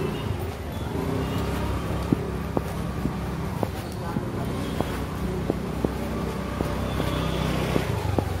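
Street ambience in a narrow lane: a steady low rumble of motorbike and traffic engines. From about two seconds in there are regular footsteps, about one and a half a second.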